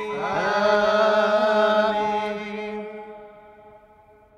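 Liturgical church chanting: voices holding long, wavering notes over a steady low note, fading away over the last two seconds.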